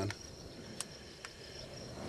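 Faint, steady high-pitched trill of insects, with two faint clicks about a second in.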